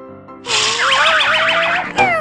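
A cartoon 'boing'-type sound effect comes in about half a second in: a loud wobbling tone that climbs slowly under a hiss. Soft background music plays underneath.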